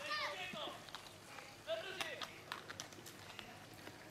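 Faint distant voices calling out, with a scatter of short light clicks and knocks.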